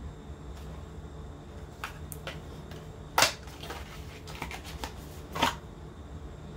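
A small paperboard product box being opened and handled, with its sponge taken out: scattered clicks and rustles of card and wrapping, the loudest a sharp snap about three seconds in and another near the end.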